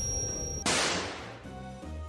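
A film sound-effect explosion: one sudden bang about two-thirds of a second in, with a hissing tail that fades over most of a second. It plays over the film score, which ends on low held notes.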